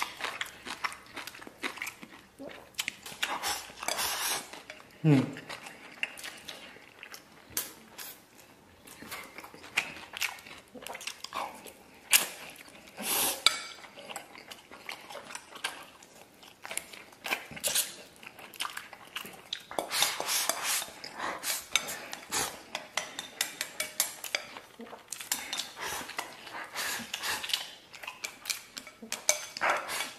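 Wooden chopsticks clicking and scraping against a ceramic bowl as a man eats rice and stewed beef in big mouthfuls, with close-up chewing and mouth sounds. Near the end he tips the bowl to his mouth and scrapes the last food in with rapid chopstick clicks.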